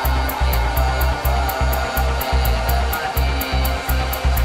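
Downtempo psychill electronic music: a pulsing bass line and a fast, even high ticking beat over sustained chords.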